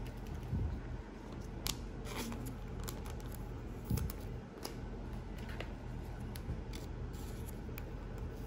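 Light plastic rustling and small irregular clicks as a trading card is handled and slid into a thin clear plastic card sleeve.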